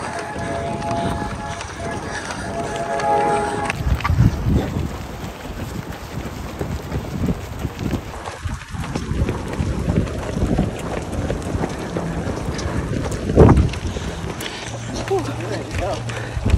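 Runners' footsteps on an asphalt road with wind buffeting the microphone, opening with a few seconds of sustained, music-like tones; a single thump stands out past the middle.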